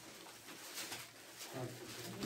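Faint rustle of thin Bible pages being leafed through by hand, with a brief soft low hum near the end.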